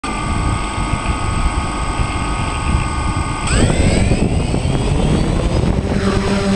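DJI Phantom quadcopter's electric motors and propellers whining steadily at low throttle. About three and a half seconds in they spool up with a rising whine as the drone lifts off, over a rush of propeller wash.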